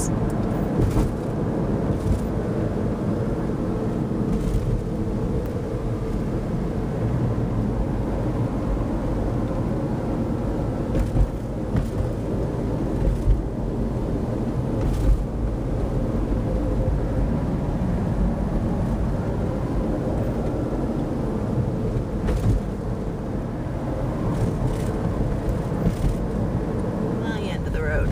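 Steady road and engine rumble inside a moving car, with a few light knocks from bumps in the road.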